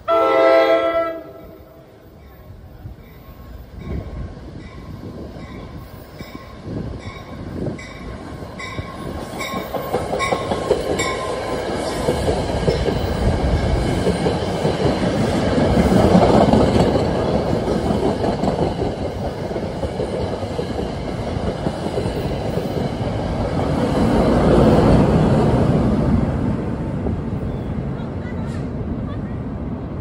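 An NJ Transit commuter train sounds a short loud horn blast as it approaches. Its bell then rings about twice a second for several seconds. The train rumbles past with wheels clattering over the rail joints, loudest as the coaches go by.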